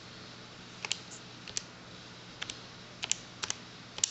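Keys of a TI-84 Plus Silver Edition graphing calculator being pressed one at a time: about eight short plastic clicks at an uneven pace, some in quick pairs, as an expression is typed in.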